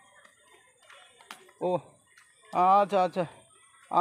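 Near silence, then a person's voice speaking briefly: a short sound about halfway through and a few words shortly after.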